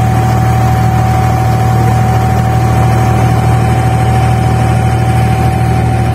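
Boat engine running steadily under way: a loud, even low drone with a thin, steady whine above it.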